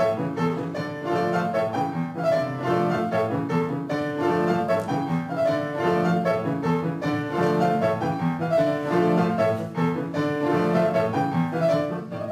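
Solo piano playing the introduction to a song, a steady run of chords and melody notes.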